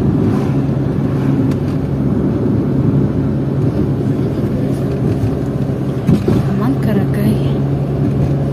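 Steady engine and road noise of a moving car, heard from inside the cabin as a continuous low drone.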